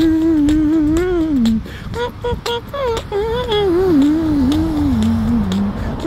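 A man humming a wavering, wordless melody in two phrases, each sliding down in pitch, the second starting about two and a half seconds in.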